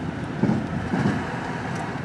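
Steady road and engine noise inside a moving car's cabin, with a couple of brief low sounds in the first second.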